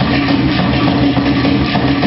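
Loud live band music with fast, continuous drumming and a held low tone underneath.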